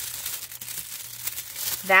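Thin silver heat-transfer foil sheet crinkling softly and irregularly as it is peeled off foiled cardstock and handled.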